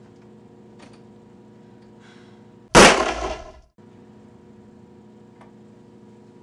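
A single loud gunshot about three seconds in, its ringing tail dying away over about a second before cutting off abruptly.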